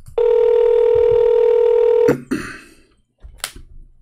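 Ringback tone of an outgoing phone call, the ringing heard by the caller while waiting for the other side to pick up. One steady ring lasts about two seconds. A few faint clicks and short noises follow.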